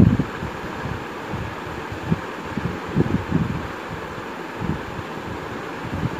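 Raw chicken pieces being tipped into a steel pressure cooker of frying ginger-garlic paste: a few soft, low thuds at irregular moments over a steady hiss.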